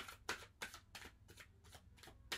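A deck of tarot cards being shuffled by hand: a quick run of soft card-on-card strokes, about three a second, growing fainter in the second half.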